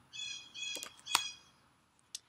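A bird chirping in the background, three short high calls in quick succession over the first second and a half.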